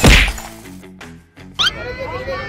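A single loud whack at the very start, an edited-in impact effect over a girl collapsing to the floor, ringing out for a moment. Soft background music follows, and a crowd of voices breaks in near the end.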